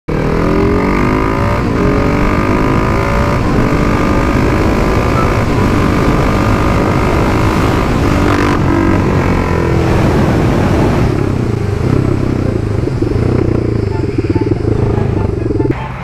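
Husqvarna 701's single-cylinder engine through an aftermarket exhaust, accelerating hard through the gears with the revs climbing and dropping at each shift, then easing off in the last few seconds. The newly fitted silencer is working loose, making the exhaust loud.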